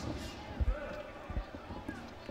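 Two dull, low thuds about three-quarters of a second apart from the boxing ring, over faint background voices.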